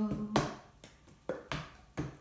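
Cup-song rhythm played with no singing over it: hand claps and a cup tapped and knocked down on a notebook on a table, sharp separate knocks about every half second. The last sung note fades out at the very start.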